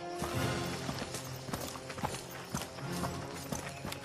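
Cartoon background music with a string of short, sharp clip-clop knocks, about two or three a second.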